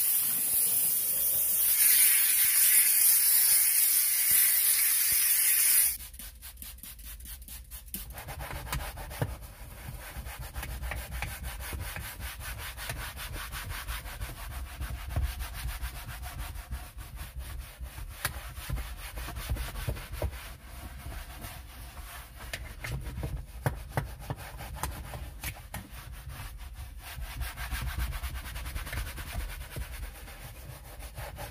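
A McCulloch 1385 steam cleaner's nozzle hissing as it jets steam onto a leather car seat, stopping abruptly about six seconds in. After a short lull, a hand brush scrubs the foam-covered leather seat cushion in rapid back-and-forth strokes.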